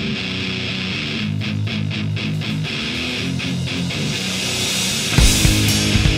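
Intro of a fast punk/grind rock song: an electric guitar riff playing on its own, then drums and bass crash in about five seconds in and the whole band starts.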